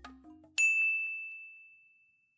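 A single bright ding about half a second in, ringing on one clear high tone and fading away over about a second and a half: a notification-style chime sound effect. The tail of the background music dies away just before it.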